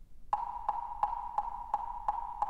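Evenly spaced percussive taps at one high pitch, about three a second, starting a moment in, like a wood block setting the beat at the start of a piece of music.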